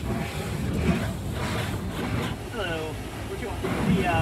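Water jets in an automatic car wash tunnel spraying against a pickup's windshield and body, heard from inside the cab as a steady rushing hiss.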